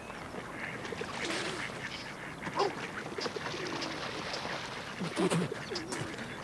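A man laughing hard: breathy, uneven bursts of laughter.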